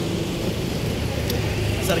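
Steady low rumble of street traffic with a vehicle engine running nearby; a man's voice comes back in near the end.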